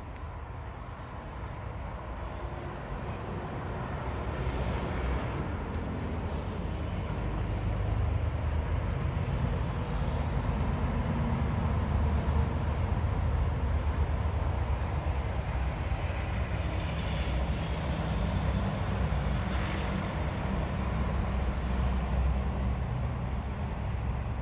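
Low rumble of a vehicle engine, growing louder over the first eight seconds and then holding steady.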